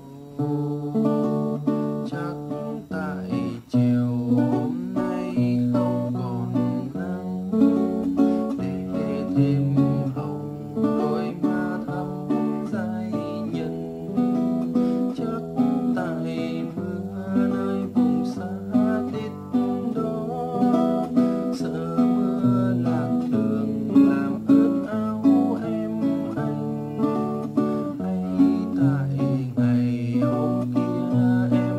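Classical guitar played fingerstyle in a bolero pattern: a bass note and then three treble strings plucked in turn, repeated steadily through a chord progression of B minor, F-sharp minor, D, E minor, G and A7.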